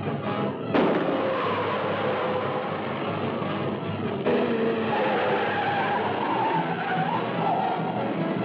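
Old film soundtrack with a narrow, dull top: a car engine running hard and tyres skidding and sliding on a dirt road, with background music under it. A wavering squeal rises in the second half.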